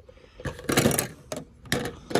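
Plastic meat-grinder attachments being handled and set down on a table: a brief rustle, then a few sharp clicks and knocks.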